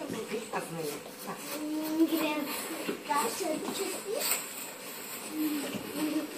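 Young children's voices chattering and calling out, fairly quiet, with short scattered utterances and no clear words.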